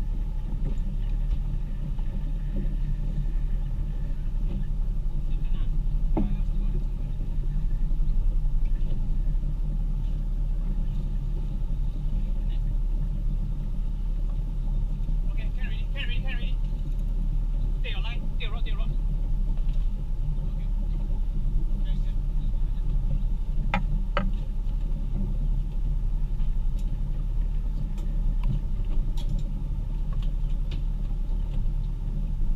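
Steady low rumble of a motorboat's engine idling, picked up through the hull and frame, with a few sharp clicks and faint voices briefly about halfway through.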